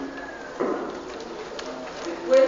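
A pause in a man's speech in a large hall, with one short, low voice sound about half a second in over faint room noise.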